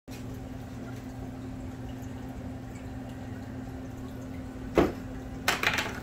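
Aquarium filter running: water trickling over a steady low pump hum. A sharp thump near the end, followed by a few quick clicks.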